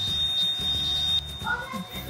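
Small corded handheld vacuum cleaner running with a steady high whine, which drops away a little past the middle.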